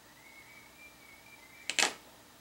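A thin metal sculpting tool set down on a tabletop: two sharp clicks in quick succession near the end, after a faint thin high tone.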